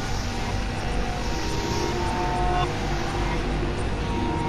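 Experimental electronic synthesizer drone music: a heavy, steady low rumble under a wash of noise, with held tones in the middle range that start and stop, several of them breaking off about two and a half seconds in.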